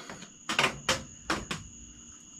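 Four light, sharp knocks spread over about a second, over a steady high chirring of crickets.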